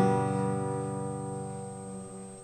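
A single acoustic guitar chord, strummed once and left to ring, fading slowly.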